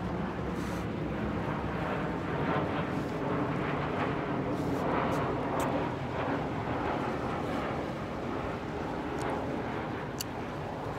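Jet airliner flying overhead, a steady engine rumble that swells to its loudest around the middle and then eases off.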